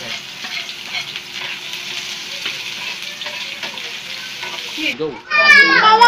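Chopped onion and garlic sizzling steadily in hot oil in a frying pan, with some stirring. Near the end a loud, high-pitched voice cuts in.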